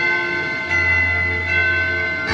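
Music with sustained bell-like chimes; a new high note enters about two-thirds of a second in and another near the middle.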